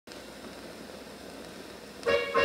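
Steady surface hiss of a 78 rpm shellac disc in the lead-in groove, before the recorded music begins.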